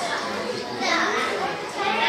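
Overlapping chatter of many young children talking at once, with no single voice standing out.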